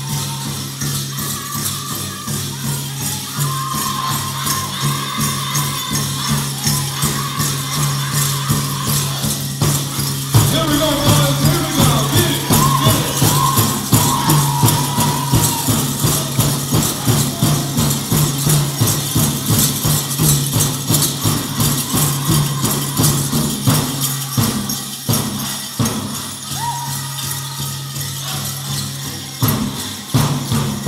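Powwow drum group beating a steady rhythm on a large drum while the singers sing a dance song; the singing grows louder about a third of the way through. Dancers' bells jingle along with the beat.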